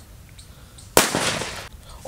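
A single firecracker going off about a second in, set off electrically by a homemade matchstick fuse wired to a car battery: one sharp bang with a short noisy tail that fades quickly.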